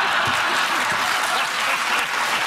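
Studio audience applauding and laughing together in a steady wash of clapping.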